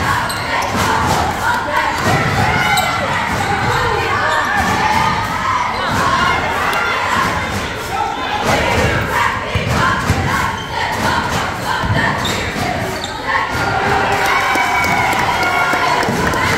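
A basketball being dribbled on a hardwood gym floor, under a crowd of young voices shouting and cheering throughout.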